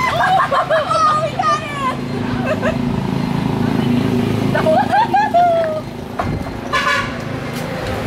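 High voices exclaiming over a motor vehicle running past on the street, with a short horn toot about seven seconds in.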